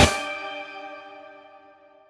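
The end of a dream-pop/shoegaze song: the full band cuts off at the start and the last chord rings on, fading away over about two seconds.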